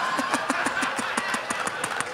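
A man laughing into a microphone in a quick run of short pulses, about seven a second.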